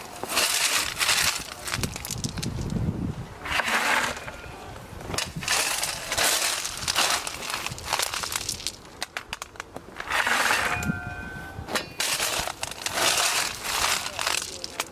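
A steel shovel blade digging into a bulk bag of rounded river rock, scooping again and again, one scoop every second or two. Each scoop is a crunching clatter of stones grinding against the blade and each other.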